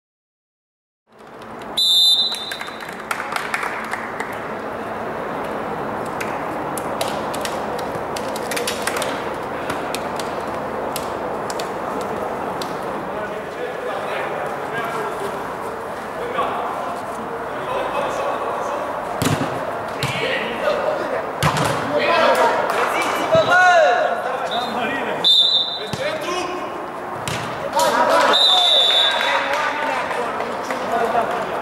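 Live sound of a small-sided football match on an indoor artificial pitch: the ball kicked and bouncing in short knocks, players' voices calling out, and short referee whistle blasts about two seconds in and twice near the end.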